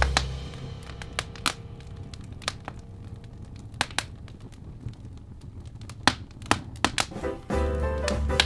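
Wood fire crackling, with sharp, irregular pops and snaps. A held smooth-jazz chord rings out and fades over the first few seconds, and the next tune's bass and chords come in near the end.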